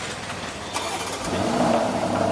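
A car engine starting about a second in, then running at a steady idle, preceded by a sharp click.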